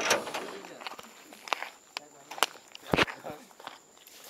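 Scattered footsteps and handling knocks on a roadside, with a sharp thump about three seconds in and faint voices underneath.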